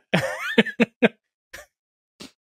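A person laughing briefly: one voiced rising note followed by a few short breathy bursts, dying away after about a second.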